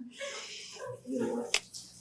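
Faint, indistinct voices of a few audience members answering a question, well below the main speaker's level.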